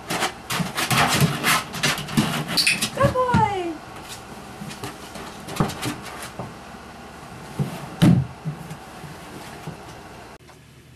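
A plastic video-game rocker chair being pushed and knocked about by a Border Collie puppy: a busy run of clattering knocks and scrabbling for the first four seconds, then scattered thuds with a sharp knock about eight seconds in. A short falling whine sounds about three seconds in.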